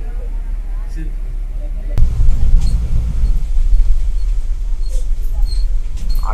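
Old bus running on the road, heard from inside the cabin as a steady low rumble of engine and road noise; a sharp knock about two seconds in, after which the rumble grows louder.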